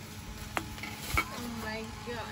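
Handheld misting fan spritzing water, with two short spray sounds about half a second apart over a faint steady hiss.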